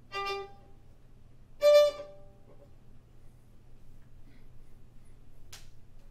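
A beginner's violin bowed in two short, separate notes: one lasting about half a second at the start, then a louder, higher note just under two seconds in. A quiet stretch follows, with a single click near the end.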